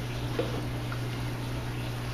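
Steady bubbling and splashing of water churning at the surface of an aquaponics fish tank, over a low steady hum.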